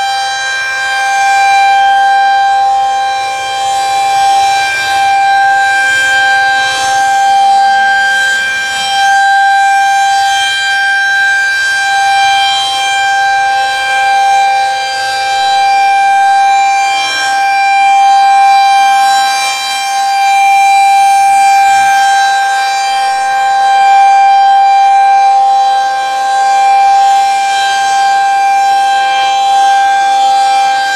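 Federal Signal 2001-SRNB electromechanical warning siren sounding its steady alert signal, one unwavering pitch with harmonics above it. The horn rotates, so the loudness swells and dips slightly.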